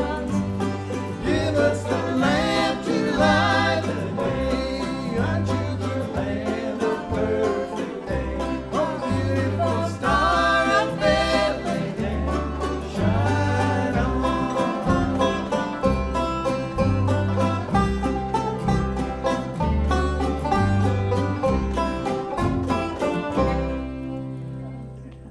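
Bluegrass band playing: banjo, mandolin, acoustic guitars and upright bass, with singing over a walking bass line. The music starts to die away at the very end.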